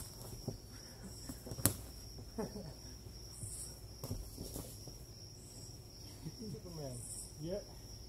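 Steady high-pitched cricket chorus, with a few sharp smacks of boxing gloves landing, the loudest about one and a half seconds in. Short pitched voice sounds slide up and down near the end.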